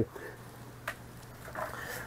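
Quiet pause with a low steady hum, one small click about a second in, and a faint rustle of a plastic shopping bag near the end.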